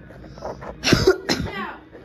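A person coughing twice in quick succession, two short harsh coughs about a second in.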